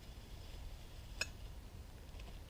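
Quiet handling of food containers beside a cooler: one small sharp click about a second in, over a steady low rumble.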